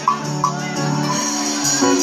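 Live band playing a slow song in a gap between sung lines: guitars and keyboard holding sustained chords.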